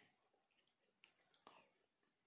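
Near silence, with faint mouth sounds of eating from a spoon and two soft clicks, about one and one and a half seconds in.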